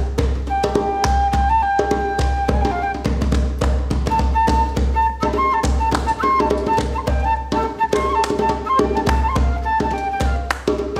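Flute playing a melody of long held notes over a djembe beaten by hand in a fast, steady rhythm.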